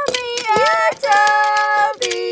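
A child's voice crying out a long, high-pitched 'aaah' in play, voicing a toy engine being tipped over. The cry holds, dips and rises again about half a second in, then holds a second time.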